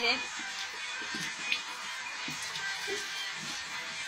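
Kitchen tap running steadily onto a metal mesh strainer of canned tuna as it is rinsed under the stream. Faint voices and music sound in the background.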